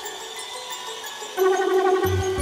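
UK hardcore dance track in a breakdown with no beat: sustained synth tones, with a louder synth line coming in about one and a half seconds in.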